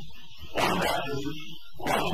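A man's voice lecturing on an old, rough recording, the words hard to make out.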